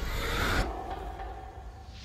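Horror sound design under a title card: a breathy rushing swell for about half a second, then a thin held tone that fades away.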